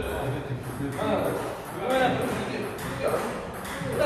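Speech in a large hall, with the short clicks of table tennis balls being hit in the background.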